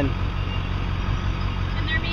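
Road traffic: a vehicle engine giving a steady low rumble.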